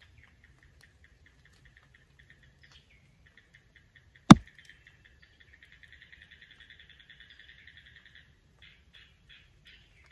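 Faint, rapid trilling chirps of a small forest creature, thickening into a continuous trill in the middle and breaking into separate chirps near the end. A single sharp click about four seconds in is the loudest sound.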